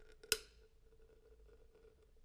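Cutting pliers snip once, sharply, about a third of a second in, biting through the aluminium lid of a beverage can to tear away the double seam, over a faint steady hum.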